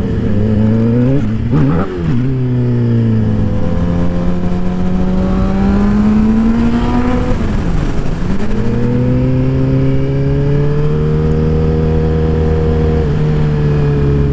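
Sportbike engine under way, its pitch climbing slowly through a gear, dropping at a gear change about eight seconds in, climbing again and falling away near the end as the rider eases off. There is a brief dip at an earlier shift about two seconds in.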